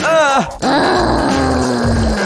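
A cartoon character's voice makes short vocal sounds, then one long, slowly falling groan, over background music.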